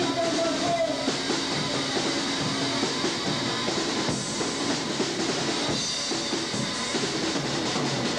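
Live rock band playing, electric guitar and drum kit together in a dense, steady wall of sound on an old, roughly recorded concert tape.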